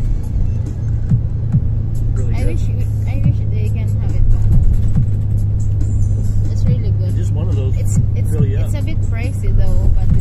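Steady low drone of a bus's engine and road noise, heard from inside the passenger cabin, with music and voices playing over it.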